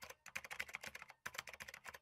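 Computer keyboard typing sound effect: quick runs of key clicks with brief pauses between them, cutting off sharply at the end.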